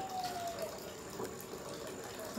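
A hummed "um" trailing off and fading within the first half second, then a faint steady hiss.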